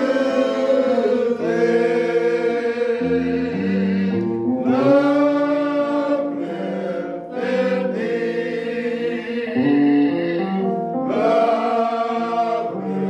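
Gospel hymn sung by several voices in slow, held chords that change about once a second, with low bass notes entering briefly.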